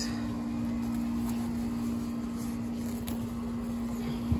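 Steady mechanical hum holding two constant low tones, with one faint click about three seconds in.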